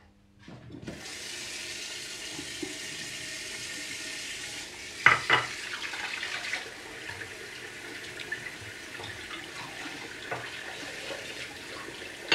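Bathroom tap running steadily into a sink, starting about a second in, with a sharp knock about five seconds in.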